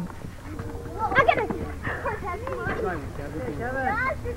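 Background voices of players and spectators chattering and calling out, quieter than the play-by-play commentary.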